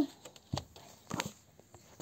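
A few faint, short knocks and rustles about half a second, a second and a quarter, and just under two seconds in, against quiet room tone: movement and handling noise.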